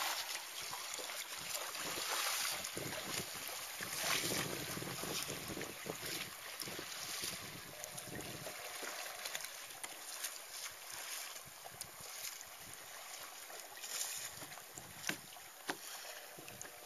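Water splashing and lapping around a sea kayak as it is paddled, with wind on the microphone; a few sharper splashes stand out, the clearest about fifteen seconds in.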